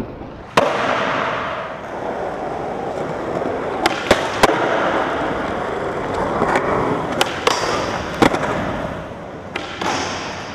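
Skateboard wheels rolling over hard ground, the rolling starting suddenly about half a second in and fading near the end, with several sharp clacks and knocks of the board in the middle and toward the end.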